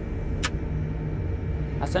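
Steady low mechanical hum of a tower crane's machinery heard inside the operator's cab, with a single sharp click about half a second in.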